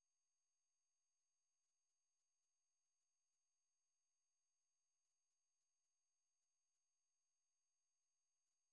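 Silence: the audio track is blank, with no sound at all.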